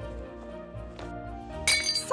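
Soft background music, then about 1.6 s in a sudden crash of a mug smashing on a hard floor, with bright ringing clinks of the breaking pieces.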